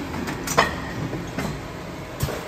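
Keck SK 11 packaging machine running: steady mechanical noise with repeated metallic clacks, the sharpest about half a second in.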